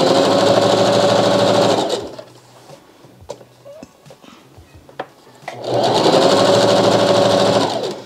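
Singer Heavy Duty sewing machine stitching satin fabric in two steady runs. The first stops about two seconds in, and the machine starts again about five and a half seconds in and stops just before the end. A few light clicks are heard in the pause between the runs.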